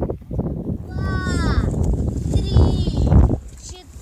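A child's high-pitched voice, wavering and falling in pitch, heard twice over a loud, rumbling noise on the microphone.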